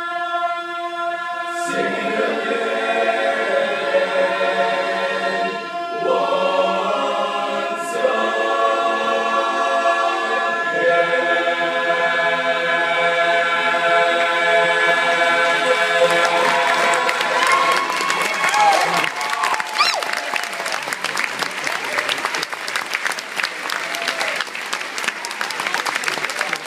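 Men's barbershop chorus singing a cappella, holding long sustained chords on the closing phrase of the song. About two-thirds of the way in, audience applause breaks out over the last chord and then carries on alone.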